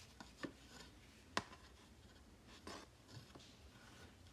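Faint handling sounds of cotton embroidery thread being knotted on a clipboard: a few soft rustles of thread rubbing and light clicks, the sharpest about a second and a half in.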